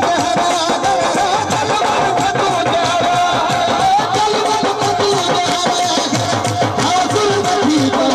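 Live folk music: a harmonium playing sustained, wavering melody tones over a steady hand-drummed dholak rhythm.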